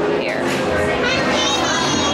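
Children's voices chattering and calling out, high-pitched, without clear words.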